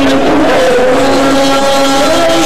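A band playing live on stage, with long held notes sustained over the band's steady accompaniment.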